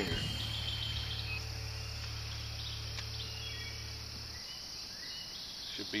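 Steady insect chorus, a high even chirring in summer woods, with a low steady hum underneath that cuts off suddenly past the middle.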